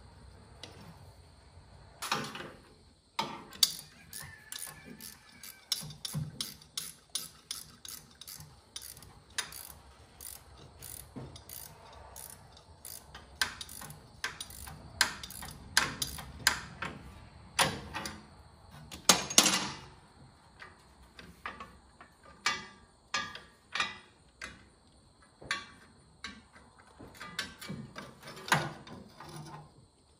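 Hand ratchet wrench clicking in runs of quick ticks as bolts on a tractor's alternator mount are turned, with a few louder knocks of metal tools.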